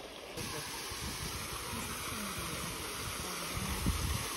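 Steady rush of water from a small waterfall falling down a rock face into a pool. The sound comes in abruptly about half a second in, replacing the quieter trickle of a shallow stream.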